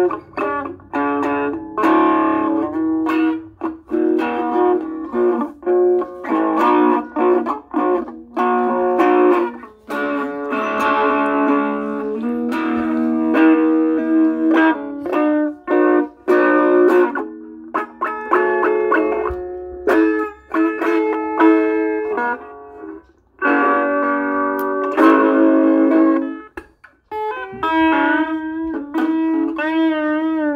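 Semi-hollow electric guitar played freely: a loose, improvised line of picked single notes and chords, with two short pauses late on.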